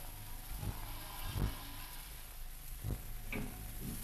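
Philips-Miller optical film recorder running with its motor and suction switched on for a sapphire cutter test: a steady low hum with a few faint knocks, under the hiss and crackle of the 1942 recording.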